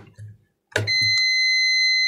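Digital multimeter on its continuity setting beeping: a few faint clicks, then a steady high beep that starts just under a second in and holds. The probe is on a CPU-rail inductor reading about 10 ohms, a low resistance that is normal near the CPU and not a short.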